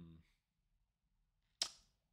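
Near silence broken once, about a second and a half in, by a single short, sharp click.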